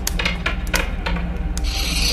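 A twenty-sided die tumbling across a wooden tabletop: a quick run of sharp knocks and clatters in the first second or so as it bounces and settles, over a low steady hum. A steady hiss starts near the end.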